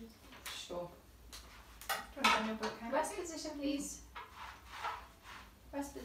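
Low, unclear talk with light clinks and knocks of small objects being handled.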